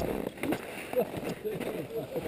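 Faint, indistinct voices of people talking.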